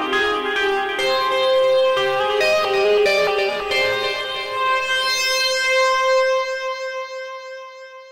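REFX Vanguard 2 software synthesizer playing its "Led Distant FM" preset: a melodic run of short notes, then a long held note that fades away near the end.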